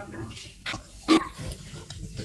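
A man's brief grunt-like throat sound about a second in, after a faint short breath, picked up close on a lapel microphone.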